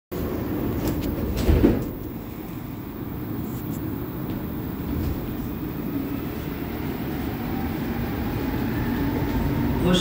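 Montreal Metro Azur (MPM-10) train: the doors shut with a thump about a second and a half in, then the rubber-tyred train pulls away with a steady rumble and a faint motor whine rising in pitch as it gathers speed.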